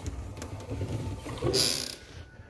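Handling noise from a phone being swung around while it films: a low rumble, then a short, loud swishing rustle near the end.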